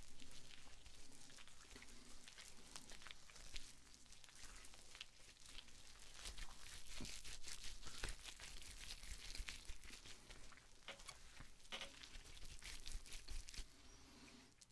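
Faint crinkling and rustling with many small, irregular clicks, from gloved hands handling something crinkly close to the microphone.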